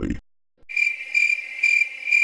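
Cricket chirping sound effect, a high pulsing chirp about twice a second, starting just after half a second in following a brief silence, the stock 'crickets' used for an awkward no-reply pause.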